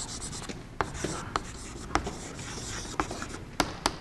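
Chalk writing on a chalkboard: light scratching with several sharp taps as the chalk strikes the board.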